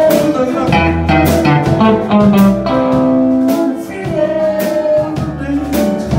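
Live blues band music led by electric guitar, with bass and regular cymbal strokes underneath.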